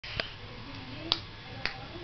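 Three sharp mouth clicks, tongue clicked against the palate to catch a newborn's attention, spaced about half a second to a second apart.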